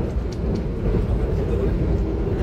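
Steady running noise of a moving passenger train heard from inside the carriage: a continuous low rumble of the wheels on the rails and the coach.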